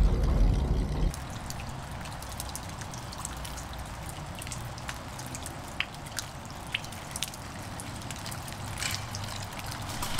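Wind and engine rumble from a camera riding on a small vintage moped, cutting off about a second in. It gives way to a quieter outdoor background: a faint low hum of the moped's engine in the distance, with scattered light ticks and drips.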